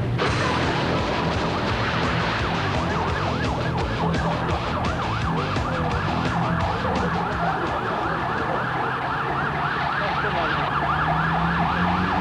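Police car siren sounding a fast, repeating rise-and-fall wail that cuts in suddenly, with a low steady hum beneath it.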